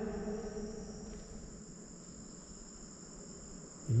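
Crickets trilling in a steady, high-pitched chorus. The tail of a man's voice dies away in the first second or so.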